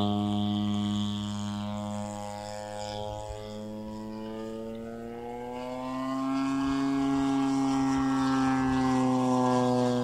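Engine and propeller drone of a radio-controlled Ultimate aerobatic biplane flying overhead. It fades a little through the first half, then swells and rises slightly in pitch from about six seconds in as the plane comes closer, easing off again near the end.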